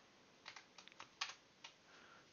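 Faint computer keyboard key presses: about eight short, irregular clicks.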